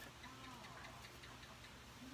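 Near silence: room tone with a faint steady low hum and a brief faint voice about half a second in.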